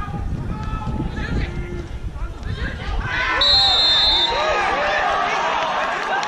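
Players and spectators shouting at a football match, the many voices swelling about three seconds in. A referee's whistle is blown once, just under a second long, in the middle of the shouting.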